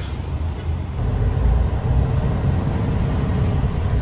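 Steady low road and engine rumble heard from inside a moving truck's cab as it drives along in traffic.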